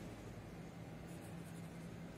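Pencil lead scratching faintly on a paper textbook page as a word is handwritten.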